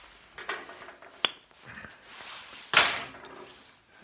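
Small handling sounds of a spark plug being taken to the motorcycle's cylinder head: scattered light clicks, a sharp tick just over a second in, and one louder clack about three quarters of the way through.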